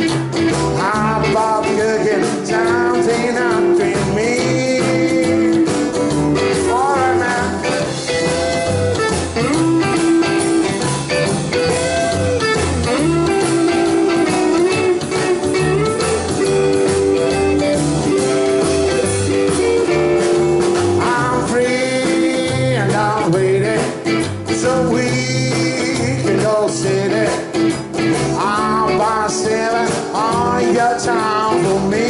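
A rockabilly band playing live, with electric and acoustic guitars, upright double bass and a drum kit keeping a steady beat.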